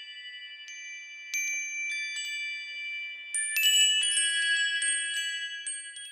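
Chimes ringing: clusters of high, bell-like tones struck at irregular moments, each ringing on and overlapping the others. They grow louder and denser about halfway through, then begin to fade near the end.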